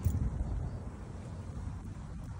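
Wind buffeting a phone's microphone outdoors: a low, gusty rumble, strongest right at the start.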